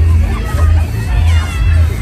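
Loud funfair ride music with a heavy, pulsing bass beat, mixed with crowd voices and riders' shouts from the swinging Fighter ride.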